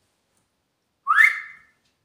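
Dead silence, then about a second in a single short whistle by a person: a quick upward glide that levels off and fades.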